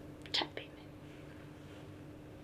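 A brief, soft, breathy vocal sound from a woman about half a second in, over quiet room tone with a faint steady hum.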